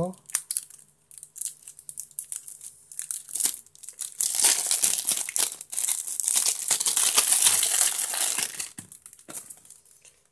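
Clear plastic film crinkling and tearing as it is pulled off a new plastic brush and its container: scattered crackles at first, then about five seconds of dense, loud crinkling.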